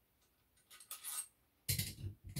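Small metal clinks as a BMW N52 connecting rod cap and its bolts are worked loose and lifted off the crankshaft, with a louder knock near the end.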